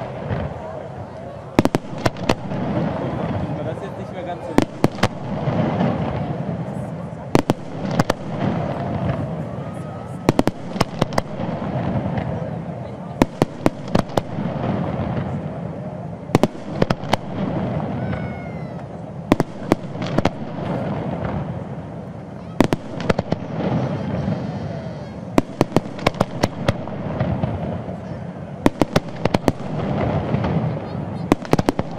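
Fireworks display: aerial shells going off in an irregular series of sharp bangs, sometimes several in quick succession, over a continuous rumble.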